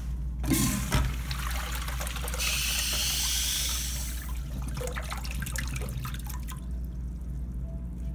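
American Standard Washbrook urinal flushing through its chrome flush valve. There is a sharp click about a second in, then a rush of water through the bowl that is loudest for a couple of seconds and tapers off after about six seconds.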